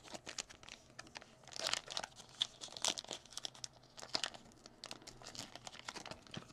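A Topps Chrome trading-card pack's wrapper crinkling and tearing as it is opened by hand, in several short bursts of crackle.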